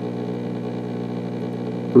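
Steady electric motor hum with a stack of even overtones, from the test tank's water-flow motor pushing current past the fly.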